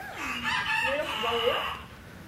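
A rooster crowing once, a single long call.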